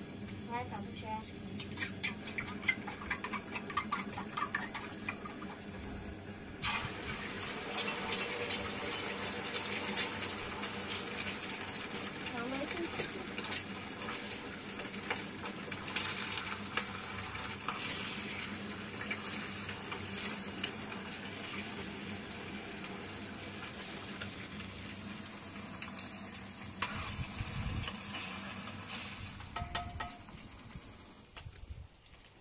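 Food frying in hot oil in a pan on a small gas burner: a few utensil clicks at first, then a sizzle that starts suddenly about six seconds in and carries on steadily, with occasional scraping ticks of the utensil in the pan.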